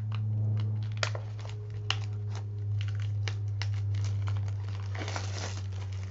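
Scissors snipping and plastic wrapping crinkling and tearing as a pack of paper journaling cards is cut open and unwrapped, with scattered sharp clicks. A steady low hum runs underneath.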